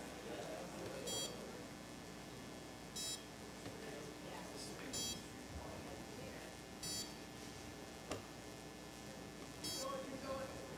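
Contactless card reader beeping five times, a short high beep about every two seconds; each beep marks a successful read of a contactless payment card held to it.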